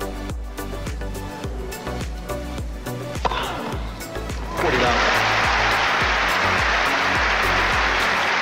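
Background music with a steady bass line and beat. About four and a half seconds in, a loud, even rushing noise suddenly joins it and holds over the music.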